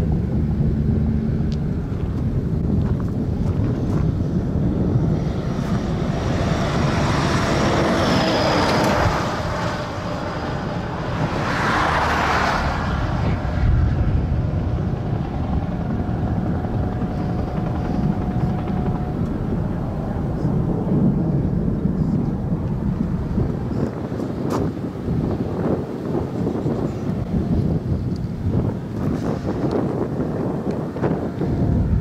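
Strong wind buffeting the microphone in a steady low rumble, with two louder rushing swells, one about seven seconds in and another about twelve seconds in.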